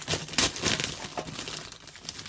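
Clear plastic bag crinkling and rustling as it is pulled open by hand, with a loud crackle about half a second in.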